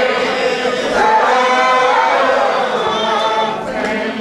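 A church congregation singing together, unaccompanied, in slow, long-drawn notes that bend in pitch. The singing thins out near the end.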